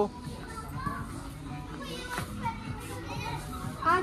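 Crowded shop-floor ambience: children's voices and chatter in a large indoor store, with background music under them.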